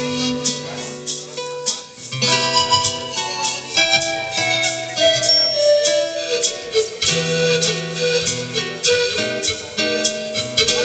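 Live acoustic music, an instrumental passage without singing: plucked and strummed strings keep a steady rhythm under long held melody notes.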